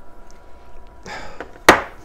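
Handling of a stainless steel mechanical mod tube and its wired test fixture. There is a brief scraping rustle about halfway through, then one sharp knock near the end, the loudest sound.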